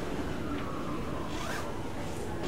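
Pen scratching across paper as it writes, over a steady low room hum, with a brighter scratchy stroke about one and a half seconds in.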